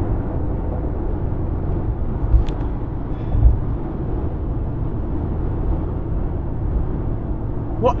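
Steady low rumble of a car on the road, heard from inside the cabin, with two brief thumps about two and a half and three and a half seconds in.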